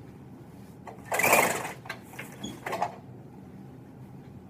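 Pull-down projection screen being drawn down over a whiteboard: a rattling burst about a second in, then a few short clicks as it settles.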